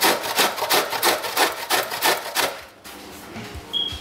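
Lump of jaggery grated by hand on a metal grater, quick rasping strokes at about five a second that stop a little under three seconds in.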